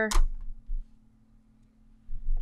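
Heat tape pulled from a tape dispenser and cut off in one short, sharp sound just after the start, followed by near quiet with a faint steady low hum.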